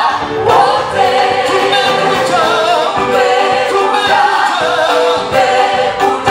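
Live gospel praise band playing a sebene-style song: a man leads the singing through a microphone with women singers joining in, over electric bass, keyboard and a drum kit keeping a steady beat.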